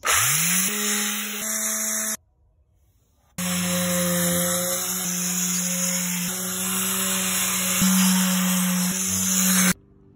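Electric palm sander (120 V, 12,000 RPM) spinning up with a rising whine and running with a steady hum and a hiss of the pad on wood. It cuts out after about two seconds, starts again suddenly about a second later, and stops shortly before the end.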